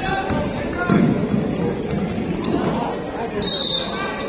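Gymnasium crowd voices with a basketball bouncing on the hardwood court, echoing in the large hall. A brief shrill tone sounds near the end.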